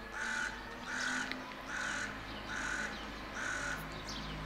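A crow-family bird calling five harsh caws in an even series, each a little under half a second long and about three quarters of a second apart.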